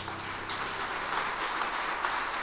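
Audience applause building up and growing louder as the last piano chord dies away.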